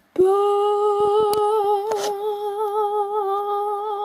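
A high voice humming one long held note with a slight waver, stopping abruptly at the end. A few faint clicks sound partway through.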